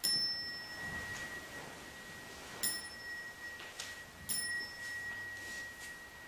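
Buddhist bowl bell struck three times, at the start, about two and a half seconds in, and about four seconds in, each strike ringing on in one clear high tone that slowly fades.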